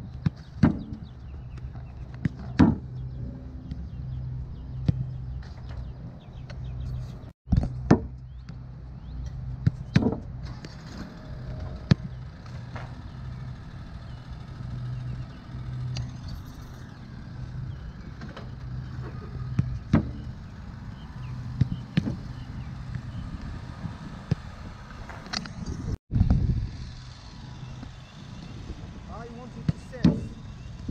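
Soccer ball repeatedly kicked against wooden rebound boards and coming back, a sharp thud every couple of seconds, over a steady low hum.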